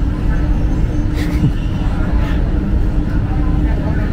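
Airport departure-lounge ambience: a steady low rumble with a faint constant hum and distant voices.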